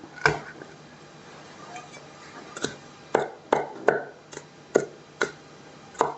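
Garlic being prepared with a large knife on a wooden chopping board: one knock as the clove is crushed under the flat of the blade, then, from about two and a half seconds in, seven chopping strokes about half a second apart.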